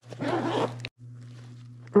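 Zipper of a padded soft ukulele case being pulled open, a scratchy rasp lasting under a second that cuts off abruptly. A low steady hum remains after it.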